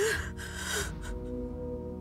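A woman's short, sharp breath, heard at the start and lasting under a second, over steady background score music with held notes.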